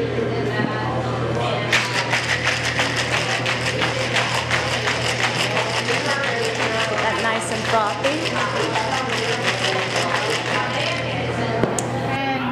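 Cocktail shaker full of ice shaken hard and fast, the ice rattling against the shaker in a quick, even rhythm that starts about two seconds in and stops just before the end. This is the hard wet shake of a Ramos Gin Fizz with egg white, cream and milk inside.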